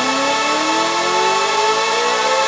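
Hardstyle build-up with no kick drum: a synth tone glides steadily upward in pitch over sustained held chords.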